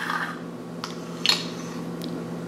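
Small plastic toy figures and a plastic toy seesaw being handled on a stone countertop, giving a couple of light taps, over a steady low hum.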